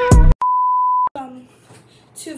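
An electronic synth-and-drum music sting cuts off abruptly. It is followed by a single steady, pure electronic beep held for most of a second, the end-of-countdown beep of a '3 2 1' intro.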